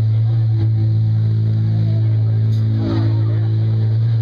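A steady low drone from the band's amplified instruments on stage, holding one pitch with its overtones, with a few faint higher guitar notes about three seconds in.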